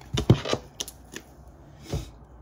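Tarot cards being handled and shuffled: a string of short sharp taps and flicks, the loudest a few tenths of a second in, with a last knock near the end as the deck is set down on the wooden table.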